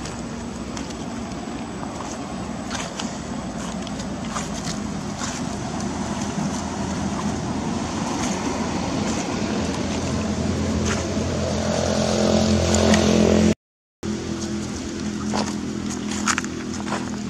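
A motor engine's hum, growing steadily louder for about thirteen seconds. It breaks off in a brief total silence, then continues more quietly.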